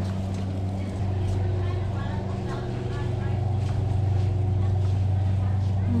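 Steady low hum of a warehouse store interior, with faint voices of other shoppers.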